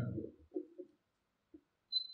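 A pause in a man's speech at a microphone: his last word trails off, then near silence broken only by a few faint, brief low sounds.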